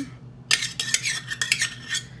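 A half cup of pumpkin purée being scraped out of a measuring cup into a bowl: a quick run of utensil scrapes and clinks against the dish, starting about half a second in.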